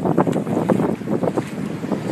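Wind buffeting the microphone over surf washing onto the beach, in uneven gusts.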